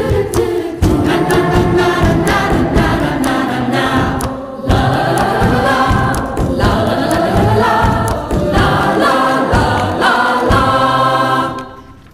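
Music: a choir singing over an instrumental backing with a steady beat, fading out just before the end.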